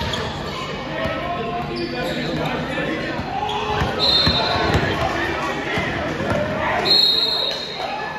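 A basketball dribbled on a hardwood gym floor, with short high sneaker squeaks about four seconds in and again near the end, and voices in the reverberant hall.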